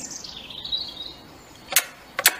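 A faint, high chirping whistle that slides down and fades within the first second, then a single sharp tap near the end as a hand strikes the mezuzah on a wooden doorpost.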